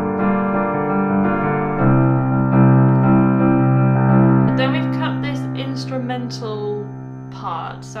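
Piano playing a chord progression of F, B-flat major 7, G minor 7 and C in a full, strummed-style accompaniment. The chords change in the first half, then the last chord is held and fades away. A voice comes in over the fading chord, speaking near the end.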